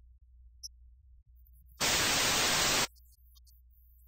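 TV static sound effect: a burst of white-noise hiss about a second long, starting abruptly near the middle and cutting off suddenly, over a faint low hum.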